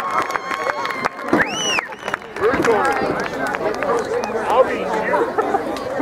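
Spectators on the sideline talking over one another in casual chatter, with one brief high rising-and-falling call about a second and a half in.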